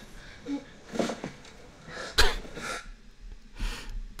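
Soundtrack of a Wan 2.5 AI-generated video clip: a few short breathy noises about a second apart, the sharpest a little past the middle, over a faint hum.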